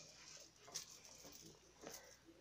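Near silence: faint room tone with two faint soft ticks about a second apart.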